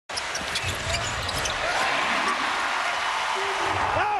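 Live NBA game sound in a packed arena: steady crowd noise over the ball and players' shoes on the hardwood court, with a man's voice shouting near the end.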